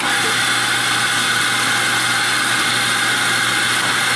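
Commercial espresso grinder's motor switching on suddenly and grinding coffee beans into a portafilter held under its chute, a loud, steady whirring.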